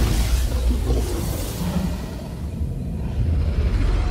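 Deep cinematic trailer rumble under a title card, fading down through the middle and swelling again toward the end.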